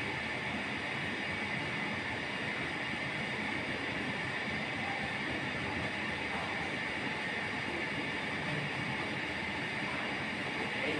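Steady background room noise, an even hiss with no distinct events.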